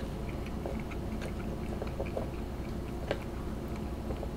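A person chewing a mouthful of spicy instant noodles, with soft wet mouth sounds and a few faint clicks, over a low steady room hum.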